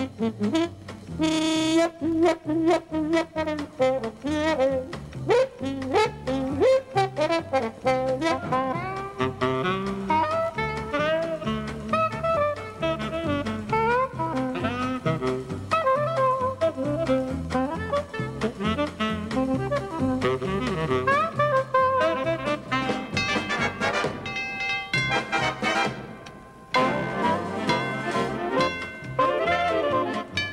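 Big band swing: a dance band's brass and saxophone sections play an up-tempo jazz arrangement, with trombone and saxophones out front. The band drops away briefly about 26 seconds in, then comes back in full.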